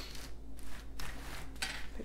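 A diamond painting canvas and its clear plastic cover being slid across a table: several short, irregular rustles and scrapes.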